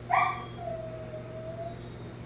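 A dog whining: a short, louder cry right at the start, then one long thin whine that sinks slightly in pitch and fades out after about a second and a half.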